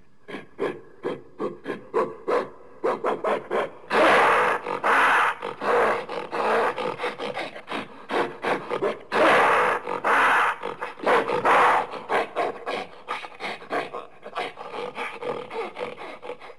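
Creature sound effects for a fictional baboon-like monster. A rapid string of short animal-like huffs and grunts, several a second, is broken by two long, loud, harsh roars about four and nine seconds in.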